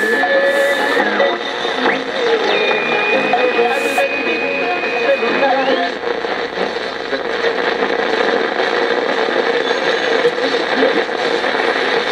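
1970 Motorola solid-state AM/FM clock radio being tuned across the dial: snatches of broadcast talk and music come and go between stations. A steady high whistle runs through the first second. A second, higher whistle runs from about two and a half to five and a half seconds in and ends by sliding upward.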